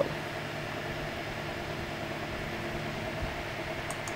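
Steady low mechanical hum under an even hiss: background machine noise, with no sudden sounds.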